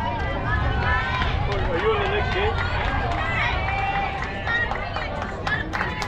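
Several voices talking and calling out over one another, with a steady low rumble underneath and a few sharp clicks near the end.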